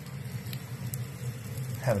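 Bacon-wrapped chicken patty and peppers sizzling on a hot metal skillet: a soft, steady frying hiss with a few faint ticks, over a low steady hum.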